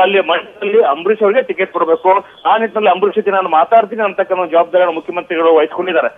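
A person speaking continuously over a telephone line, the voice thin and narrow.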